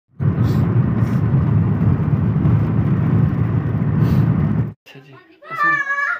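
Steady rumble of a car driving, heard from inside the cabin. It cuts off suddenly after about four and a half seconds, and a man's voice follows.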